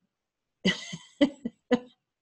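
Four short, breathy bursts of a person's voice in quick succession, about a quarter to half a second apart, heard over a video-call connection.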